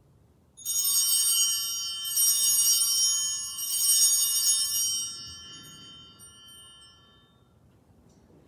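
Altar bells (Sanctus bells) shaken three times, about a second and a half apart, with high, clear ringing that dies away a few seconds after the last shake. They signal the elevation of the chalice at the consecration.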